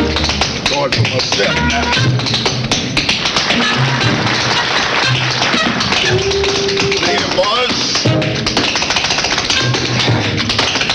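Tap dancer's shoes tapping quick, dense rhythms on a stage floor over a band accompaniment playing held notes.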